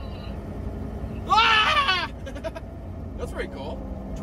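A person's drawn-out, wavering wordless vocal exclamation about a second in, followed by faint talk, over the steady low drone of a vehicle's engine and road noise inside the cabin.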